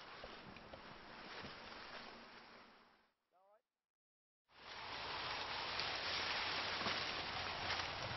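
Steady rustle of wind through tall maize leaves, faint for about three seconds, then a silent gap of about a second and a half, then louder and steady.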